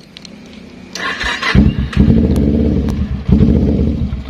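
Carburetted Kawasaki Ninja 250 parallel-twin engine being started. The starter cranks briefly about a second in, the engine catches about a second and a half in, then runs loud with a couple of quick blips of the throttle.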